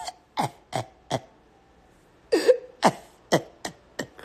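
A person laughing hard with almost no voice: short breathy bursts, three in the first second, then a lull, then four more in the second half.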